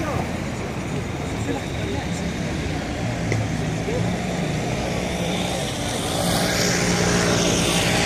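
Street ambience: a motor vehicle's engine running steadily nearby, with voices in the background. A louder hiss builds up about six seconds in.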